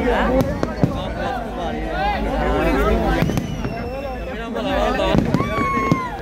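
Fireworks going off overhead with several sharp bangs and cracks, over a crowd of people talking and shouting. A long whistle sounds near the end.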